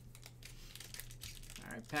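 Plastic trading card pack wrapper crinkling and crackling in the hands as it is opened, a quick run of small crackles.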